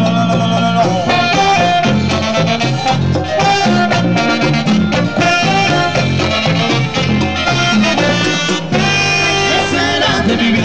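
Live cumbia band playing an instrumental stretch between sung verses: percussion and bass keep a steady dance rhythm under a melody line.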